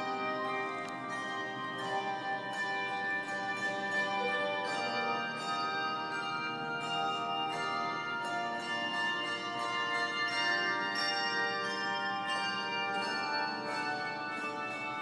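Handbell choir playing a piece, with many overlapping ringing notes struck in succession and sustained throughout.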